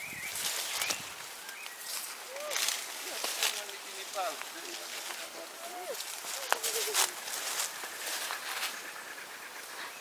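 Leaves and undergrowth rustling and swishing in irregular bursts as someone pushes through dense vegetation, with faint voices in the distance.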